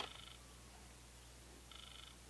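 A faint click, then two short, faint buzzes about two seconds apart.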